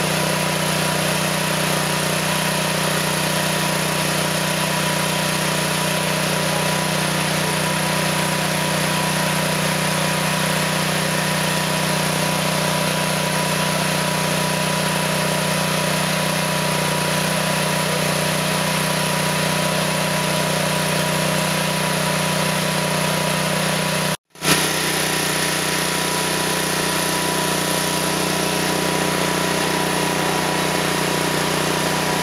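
Small gas engine on a trailer-mounted metal roll-forming machine, running steadily with an even hum. The sound drops out for a moment about 24 seconds in, then resumes unchanged.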